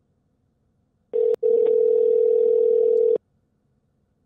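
Telephone ringback tone heard over a phone line: a single steady ring of about two seconds, with a brief click that cuts it out just after it starts. It is the call ringing through after a selection in an automated phone menu.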